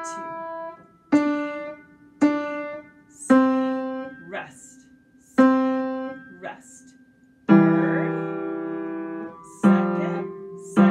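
Upright piano played slowly: single notes struck about once a second, each left to ring and fade. Near the end comes a held two-note interval that rings for about two seconds.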